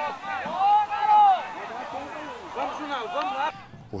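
Several voices shouting and calling out across a football pitch, with one long held shout about a second in; the sound cuts off abruptly shortly before the end.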